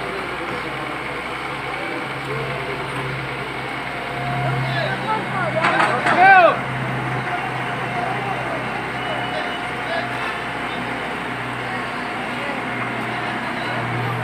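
Diesel engine of a Hitachi tracked excavator running steadily as it works, filling pits with rubble. A voice shouts briefly about six seconds in.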